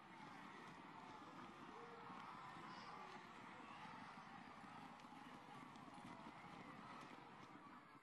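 Faint hoofbeats of racehorses galloping on the track.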